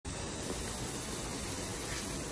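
Pop-up lawn sprinkler spraying water over grass: a steady hiss.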